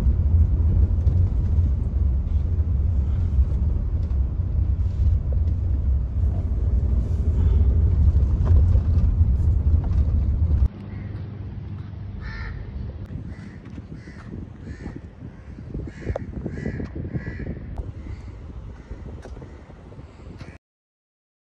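Steady low rumble of a car cabin on the move, cut off suddenly about halfway through. Then quieter outdoor sound with a bird calling several times in short calls.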